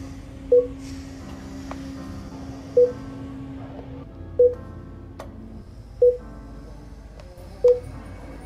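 Five short electronic beeps, evenly pitched and spaced about one and a half to two seconds apart, from a stamp-rally stamping machine as a card is pressed into it. Background music plays under them.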